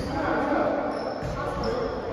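A basketball bouncing on a hardwood gym floor, with two short high squeaks about a second in and again near the end, typical of sneakers on the court, all echoing in the big hall.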